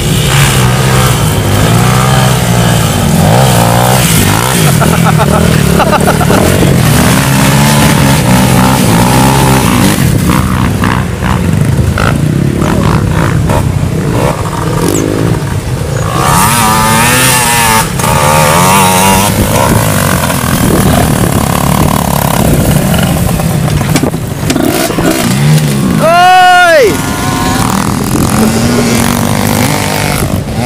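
Dirt-bike engines running and revving on a muddy trail, with a crowd of voices shouting and chattering over them. Near the end comes one brief loud rising-then-falling sound.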